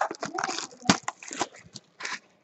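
Trading cards being handled and sorted by hand: a run of quick, irregular clicks and rustles as the cards are flipped and tapped together.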